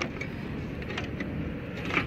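A car stereo being wiggled in its metal mounting bracket in the dash: a few faint clicks and knocks over a low, steady rumble.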